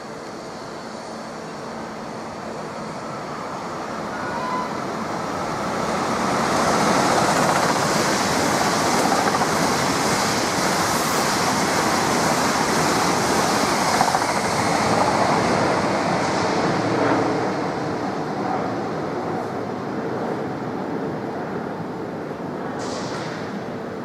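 High-speed electric passenger train passing through the station without stopping. A rush of wheel and air noise builds over several seconds, is loudest through the middle, then fades as the train goes away.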